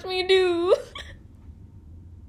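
A young woman's voice: one drawn-out vocal sound lasting under a second, rising in pitch at its end, followed by quiet room tone with a faint click.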